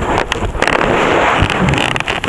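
Rustling, crackling noise with many small knocks, the sound of an action camera being handled and rubbed against its microphone.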